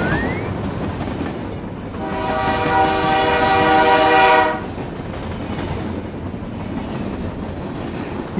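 A train horn sounds one long steady blast of about two and a half seconds, starting about two seconds in, over a steady low rumble.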